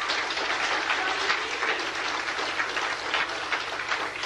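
Audience applauding: a dense clatter of many hands clapping that eases a little near the end.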